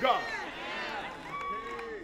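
Speech only: a man's voice through a microphone ending a phrase, then quieter voices in a large hall.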